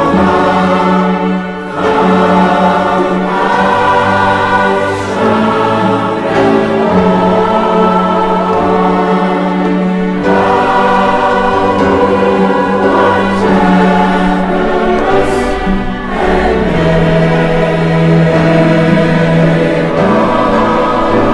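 Mixed choir singing a slow hymn in long held chords, accompanied by piano and strings. The sound dips briefly between phrases, about a second and a half in and again near sixteen seconds.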